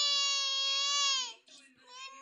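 A toddler crying: one long wailing cry that falls in pitch and breaks off about a second and a half in, then a new cry starting near the end.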